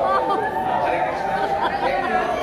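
Voices talking over one another, with a steady drone underneath.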